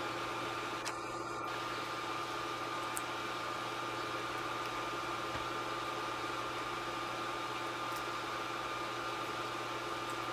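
Steady machine hum with several even tones running under it, with a few faint clicks of a budgerigar pecking at seed.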